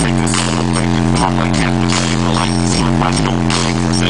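Electronic dance music played very loud through a car stereo with four 18-inch subwoofers and Rockford Fosgate amplifiers, heard from inside the cabin. It has long held bass notes that slide to a new pitch every second or so under a busy beat.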